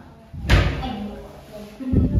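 A door shutting with a heavy slam about half a second in, ringing briefly in a tiled room, followed by a second thud near the end.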